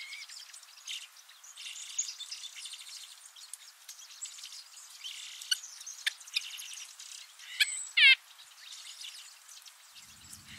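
Small wild songbirds chirping and twittering, many short calls and trills overlapping. About eight seconds in, one louder call sweeps downward in pitch.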